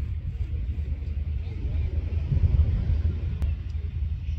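Wind buffeting the microphone: an uneven low rumble that swells past the halfway point, with a single faint click near the end.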